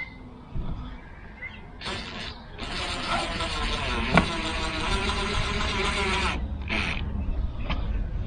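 Cordless drill-driver driving stainless steel screws through a plastic rear bumper skirt: a short burst about two seconds in, a steady run of nearly four seconds, then another short burst near the end.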